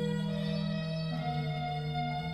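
Historic French classical pipe organ, the 1772 Jean-Baptiste Micot organ, playing slow held chords, the voices moving to new notes about a second in.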